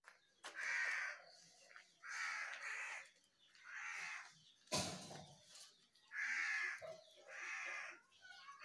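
A bird calling repeatedly in the background, about six faint calls each lasting under a second, with a single sharp click about halfway through.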